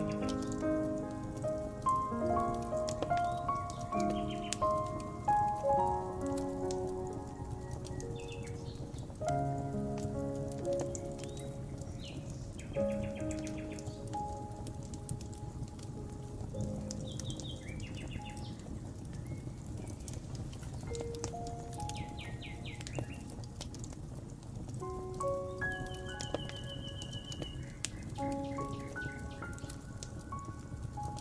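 Soft solo piano melody over a crackling wood fire, its crackles and pops scattered throughout. Birds chirp in short trills several times.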